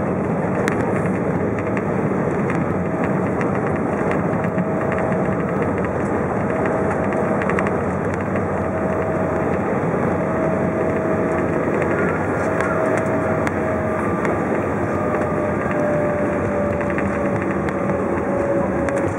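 Cabin noise of an Embraer E190 on the ground after landing: the steady rush of its CF34 turbofan engines and airflow, with a faint whine that slowly drops in pitch and light rattles.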